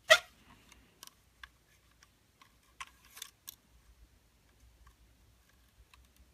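Faint, scattered clicks and ticks of a nylon zip tie and a plastic quadcopter body being handled as the tie is threaded through a slot, with one sharper click right at the start.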